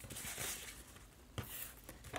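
Faint rustle of a paper sheet being turned and slid over a cutting mat, with a single click about one and a half seconds in.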